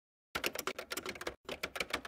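Keyboard-typing sound effect: a run of rapid clicks starting about a third of a second in, with a brief pause near the middle, as text appears letter by letter.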